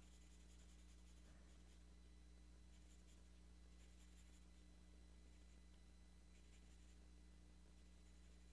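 Faint scratching of a 2B graphite pencil shading on stone paper, over a low steady electrical hum.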